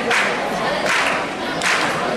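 A group of young voices chanting in unison, with a loud shouted beat roughly every 0.8 seconds.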